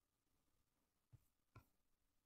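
Near silence, with two faint clicks a little after a second in.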